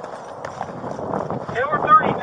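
Body-worn camera picking up an officer running: hurried footsteps and gear rustle that grow louder, with a raised voice starting near the end.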